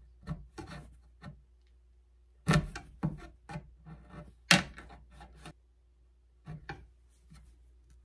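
Staples being pried out of a wooden shelf edge with a thin metal tool, with the fabric tugged free: scattered clicks and scrapes, two sharper ones about two and a half and four and a half seconds in.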